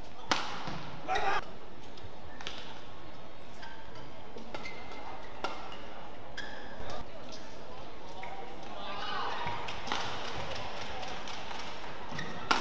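Badminton rally on an indoor court: sharp racket strikes on the shuttlecock about once a second, with short high squeaks of shoes on the court mat between them.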